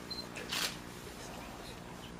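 A short, crisp click-like noise about half a second in, over a steady low hum and faint murmur in the room.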